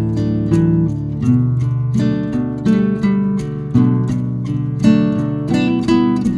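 Background music: an acoustic guitar playing plucked, strummed chords at an unhurried, steady pace, a new chord struck about once a second.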